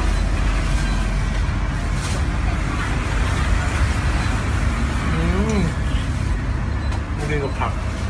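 Steady low rumble of street traffic, with a short murmured voice about five seconds in.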